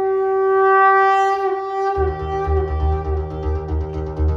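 Dance music played loud through a truck-mounted DJ sound system: a long, held, reedy lead note, then about halfway through a heavy, pulsing bass beat comes in under it.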